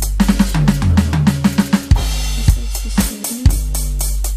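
Electronic drum kit played along to a pop backing track: kick, snare and cymbal hits in a steady beat over a deep, sustained synth bass, with a run of quick short bass notes in the first two seconds.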